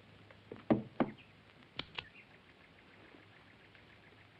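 Four short knocks in two pairs. The first two, a little under a second in, are louder and duller. The second two, about two seconds in, are lighter and sharper.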